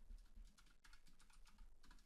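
Faint computer keyboard typing: a run of quick keystrokes.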